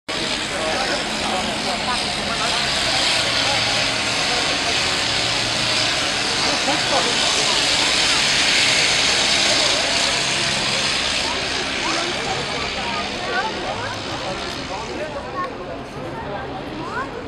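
Blériot XI monoplane's engine and propeller passing low overhead, growing louder to a peak about halfway through and then fading away.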